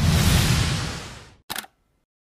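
Edited-in transition sound effect: a dense swell of noise with a deep rumble that fades out over about a second and a half, then a brief sharp click.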